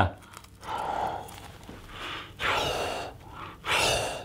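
Three breathy blows of a man's breath into a thin gelatin bubble held to his mouth, puffing it out. The gelatin shell is too floppy to hold its shape on its own.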